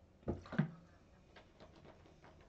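A man gulping water from a plastic bottle: two swallows in quick succession early on, the second with a short throaty sound, followed by faint scattered ticks.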